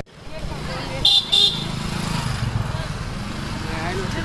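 Street ambience: a motor vehicle engine running steadily, with two short horn toots about a second in and voices in the background.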